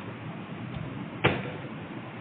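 Steady background hiss of a sermon recording during a pause, with a single sharp knock just past halfway that rings on briefly.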